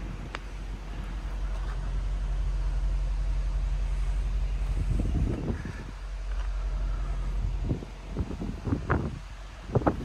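A motor vehicle engine running with a low, steady hum that swells and then cuts off about three-quarters of the way through. Short knocks and rustles follow near the end.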